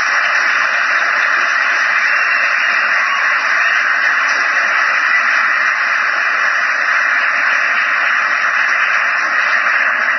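A large audience applauding steadily, the claps blurred into one dense, even hiss.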